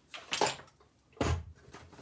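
Manual die-cutting machine being set down on the craft desk: two knocks about a second apart, the second deeper and heavier.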